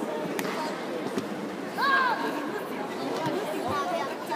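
Spectators talking and chattering in a large sports hall, with a short high-pitched shout about two seconds in.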